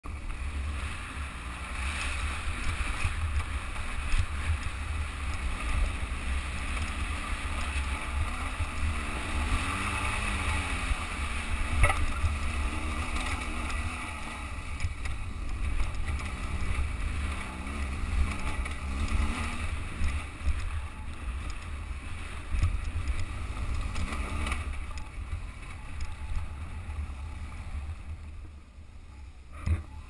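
BMW R1200GS Adventure's boxer-twin engine pulling up a steep, rocky hill climb, its pitch rising and falling with the throttle, under heavy wind buffeting on the camera microphone. Engine and wind noise drop away near the end.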